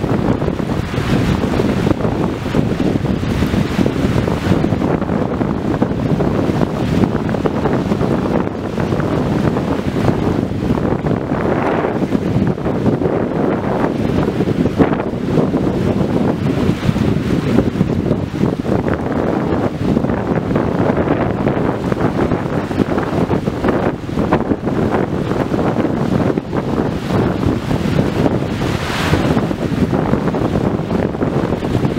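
Wind buffeting the microphone in a steady low rumble, with ocean surf underneath; the wind surges briefly a couple of times.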